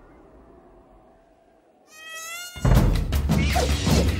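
A faint wavering buzz, then a louder buzzing tone about two seconds in that falls slightly in pitch. Loud music with heavy bass and a steady beat cuts in over it about half a second later.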